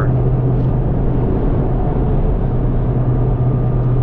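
Steady in-cabin drone of a Ford Mustang GT (S550) cruising at constant highway speed: the 5.0 Coyote V8's low, even hum under road and tyre noise.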